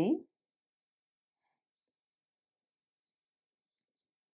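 Near silence after the end of a spoken word, with only a few very faint, soft high ticks.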